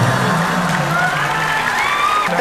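Studio audience laughing and cheering, with a held low note of comic music underneath.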